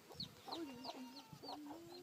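Faint bird calls: a run of short, falling chirps, about four a second, with a lower wavering call beneath.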